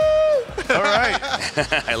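A man's long, held "woo" shout at a steady pitch ends about half a second in. Excited voices follow.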